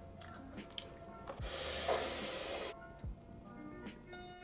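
Close chewing in the first second or so, then a spray bottle hissing in one continuous burst of just over a second. Background music with a steady beat plays throughout.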